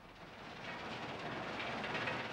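Industrial machinery at a mine processing plant, a steady mechanical clatter and rumble that fades in and grows louder over the first second, then runs on evenly.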